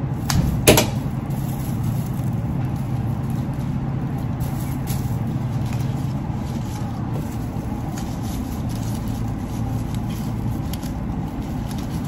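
Steady low hum of background machinery, with two short clicks less than a second in.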